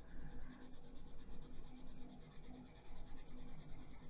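Caran d'Ache Luminance wax-based coloured pencil shading a swatch on paper: faint, steady scratching of the lead across the paper.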